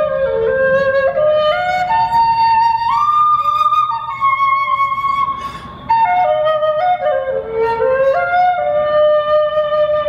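End-blown replica Ice Age flute, with four finger holes in something like a pentatonic scale, playing a slow melody of held notes that step up and down. There is a short breath pause about six seconds in.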